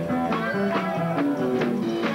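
Sacred steel gospel music: an electric steel guitar plays a sliding, gliding melody over bass, with a steady driving beat of about two strokes a second.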